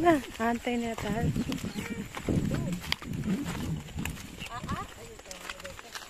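People talking casually in short snatches, in several short phrases.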